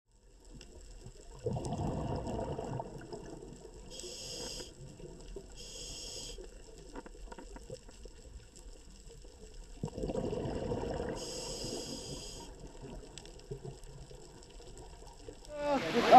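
Quiet underwater sound of scuba breathing: exhaled bubbles rush past twice, about one and a half and ten seconds in, with short high hisses from the regulator in between.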